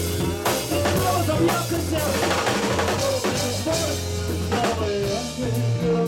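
Live band music led by a drum kit keeping a steady beat of about two hits a second, with snare and bass drum, under a steady bass and a melodic line.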